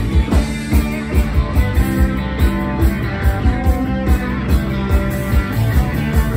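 Live rock band playing an instrumental passage: electric guitars over a drum kit keeping a fast, steady beat, with no vocals.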